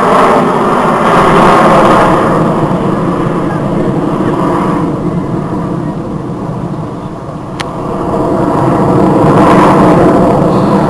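Jet engine noise from a formation of Alpha Jets flying overhead, loud and steady. It fades in the second half and swells again near the end. A single short click sounds about seven and a half seconds in.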